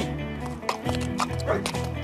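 A horse's hooves clip-clopping, several separate hoofbeats, under background music.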